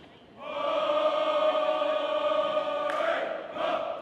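Marching band horns holding one long, loud chord that cuts off sharply after about two and a half seconds. A short second blast follows just before the end.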